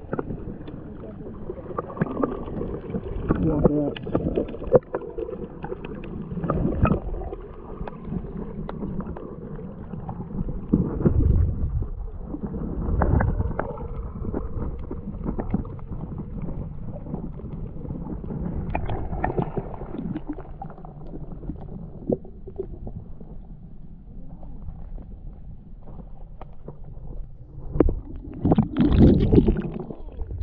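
Muffled water sloshing and gurgling heard through an underwater camera, with irregular low swells and thuds as the camera moves in the water.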